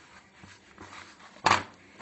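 Hands kneading and pressing soft risen yeast dough on a plastic tray, knocking the air out of it after its rise, with faint handling sounds and one sharp thump about one and a half seconds in.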